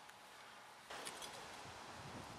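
Near silence: faint background hiss, which steps up slightly about a second in.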